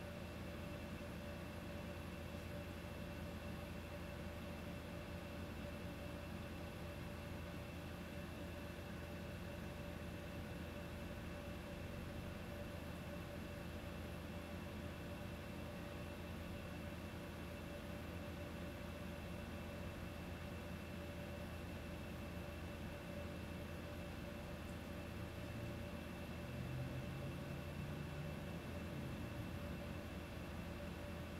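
Steady low hum and hiss of background room noise, with a few constant faint tones. Near the end a faint low tone rises briefly.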